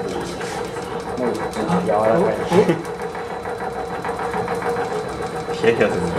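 Shaking table running under a balsa-wood model tower during a vibration test: a steady mechanical hum with a fast, dense rattle.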